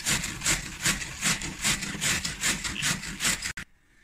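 Cabbage being shredded on a wooden hand cabbage shredder: a quick, even run of scraping strokes as the cabbage is pushed back and forth over the blades. The sound cuts off abruptly about three and a half seconds in.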